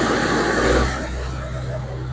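Belarus 920.4 tractor's diesel engine running as the tractor creeps along in its lowest gear. It is loudest in the first second, then settles to a steady low drone.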